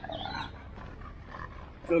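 A single short, loud vocal sound near the end, heard over steady outdoor background noise.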